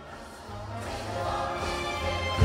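Large choir singing with instrumental accompaniment in a live stage show, starting softly and building in volume.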